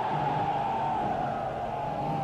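Film soundtrack of a crowd scene: a steady noisy background with one long held tone slowly sinking in pitch.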